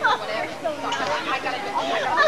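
Chatter of several overlapping voices, children's among them, with no clear words.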